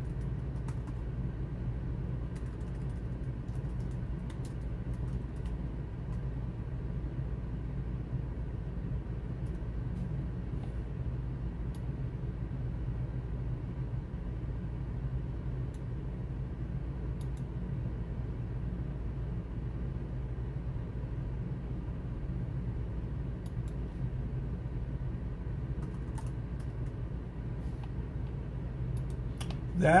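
Computer keyboard typing in short scattered runs, with a few clicks, faint over a steady low hum.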